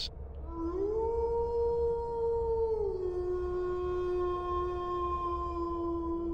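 A long howl: it rises into a high held note, then drops to a lower held note about three seconds in and holds steady until the end.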